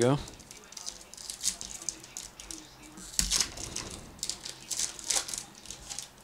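A trading-card pack wrapper being crinkled and torn open by hand, a run of crackles and rustles that grows louder about three seconds in and again about five seconds in.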